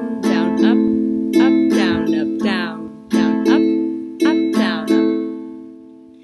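Ukulele strummed on an A minor chord in the island strum pattern (down, down-up, up-down-up), played through about twice, with the last chord ringing out and fading for the final second.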